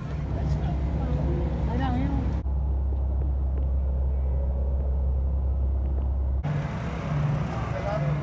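A steady low rumble with faint voices over it; for about four seconds in the middle only the rumble is left, the higher sounds cut out abruptly.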